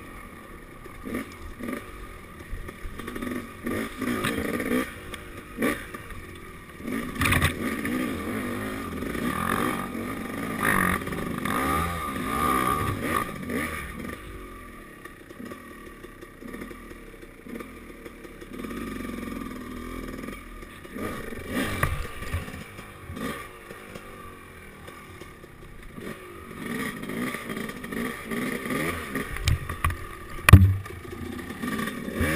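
KTM dirt bike engine revving up and down at low trail speed, with scattered knocks and clatter as the bike works over ruts and branches.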